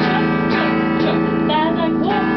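Electric guitar strumming sustained chords, restruck about every half second.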